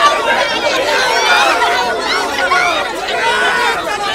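A crowd of mostly women shouting and talking over one another at once, a dense, steady babble of raised voices during a pushing scuffle with police.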